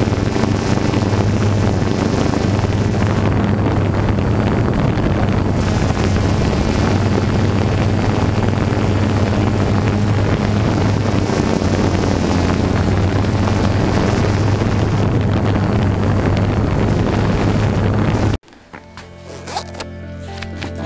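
Steady hum of a camera drone's propeller motors mixed with wind on its microphone, with a low drone underneath. It cuts off abruptly near the end.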